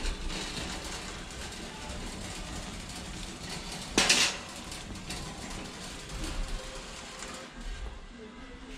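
A metal wire shopping cart rolling over a concrete store floor with a steady low rumble, and one brief loud clatter about four seconds in.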